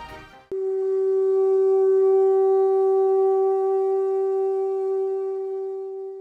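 Conch shell trumpet (pū) blown in one long steady note, starting suddenly about half a second in and held to the end, where it begins to fade. The tail of a music track fades out just before it.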